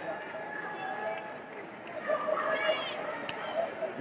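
Echoing background chatter of spectators and coaches in a large arena, with a louder shout from one voice about two and a half seconds in and a single sharp click shortly after.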